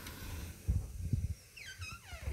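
A bedroom door being pushed open, with a few soft knocks, then a high squeal that slides steadily down in pitch near the end.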